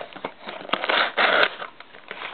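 A sealed trading-card hobby box being torn open by hand: crinkling wrap and tearing packaging, with a few sharp clicks and the loudest rasping about a second in.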